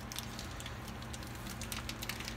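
Raw ground sausage being squeezed out of its plastic chub wrapper, with faint crinkling and squishing over a low steady hum.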